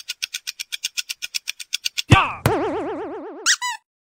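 Cartoon sound effects: a fast run of light ticks, about six a second, then a sudden knock and a wobbling boing tone that slowly fades, ending with a short rising chirp.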